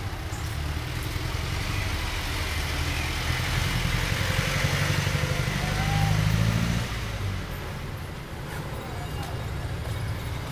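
Street traffic noise with a vehicle engine running, its low hum growing louder until about seven seconds in and then falling away.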